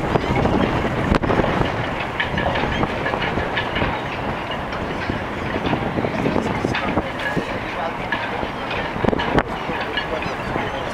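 Wind rumbling on the microphone, with people talking and scattered clicks.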